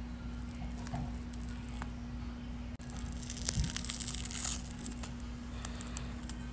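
Black peel-off face mask being pulled off the skin: a faint crackling, tearing sound that thickens about halfway through.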